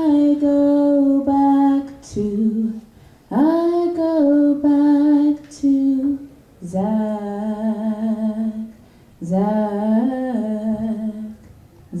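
A woman singing unaccompanied into a handheld microphone, holding long, slowly moving notes in four or five phrases with short breaths between them; near the end she sings the name "Zack".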